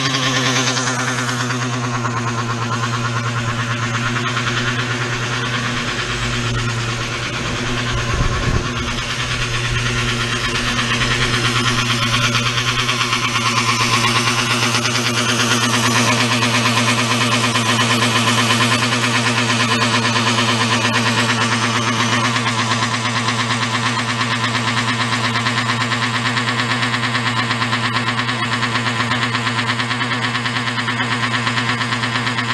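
Rovan 71cc two-stroke engine in a large-scale RC buggy idling steadily at an even pitch while its carburetor is being tuned with a screwdriver. A few low knocks come about eight seconds in.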